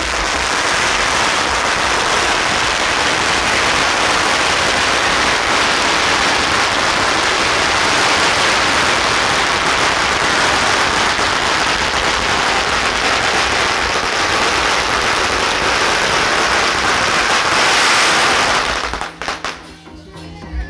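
A long string of firecrackers going off in a dense, continuous crackle of rapid bangs that stops abruptly about a second before the end.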